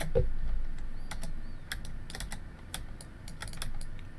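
Computer keyboard keys being pressed: about a dozen light, irregular clicks starting about a second in.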